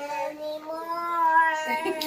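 A young child singing a long held note that rises slightly and falls back, followed by a short broken bit of voice near the end.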